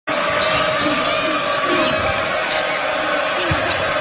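Crowd noise filling a basketball arena, with a basketball bouncing on the hardwood court; one sharp knock stands out about three and a half seconds in.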